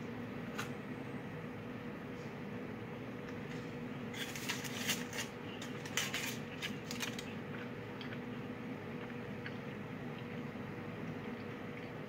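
Quiet room with a steady low hum, and a few clusters of small crackles and clicks between about four and seven seconds in, as a chocolate-coated marshmallow cookie is bitten, chewed and broken open.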